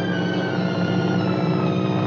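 Orchestral film score with sustained strings, one line sliding slowly down in pitch.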